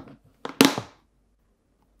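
One short, sharp clatter of hard plastic about half a second in, as a clear plastic storage container and its lid are handled on a countertop.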